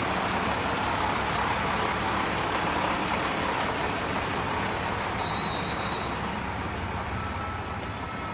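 Diesel engine of a stopped train idling steadily at the platform, a continuous engine noise that fades slightly towards the end.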